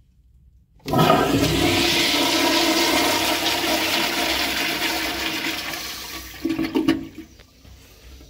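Kohler Corwyn toilet flushing. The rush of water starts suddenly about a second in, slowly fades, and ends with a few short louder bursts near the end.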